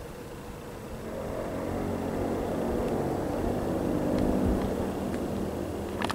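A passing road vehicle's engine, growing louder from about a second in.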